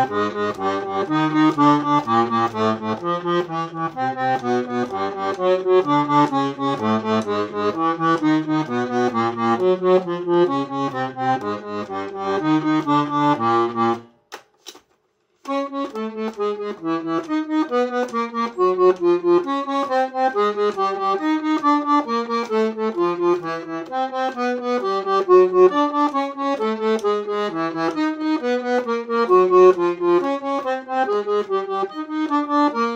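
Bass side of a Royal Standard Grandina three-voice button accordion played: single bass notes alternating with chords in a steady repeating pattern, as the basses of the overhauled instrument are checked. About halfway through it stops for a moment with a couple of clicks, then carries on with the bass notes sounding higher.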